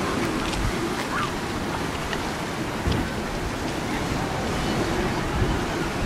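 Wind buffeting the microphone over the steady wash of sea surf below the cliff, with a few short faint calls, one about a second in and others near the end.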